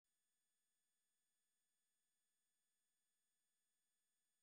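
Near silence: an essentially silent soundtrack with no audible sound.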